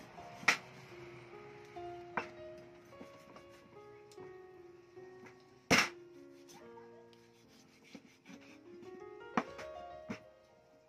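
A meat cleaver striking meat on a wooden chopping board four separate times, a couple of seconds apart, the loudest about halfway through, over background music.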